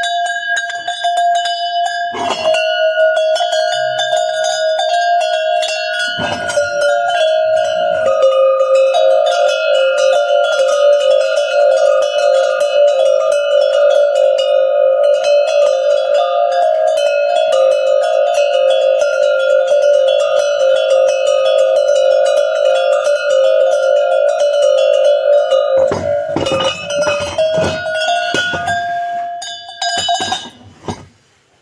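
Handmade metal goat bells on leather straps shaken by hand, clanging rapidly and ringing together in several notes. After a few seconds more bells join in with lower notes, and near the end a few heavier clunks come as the bells are set down.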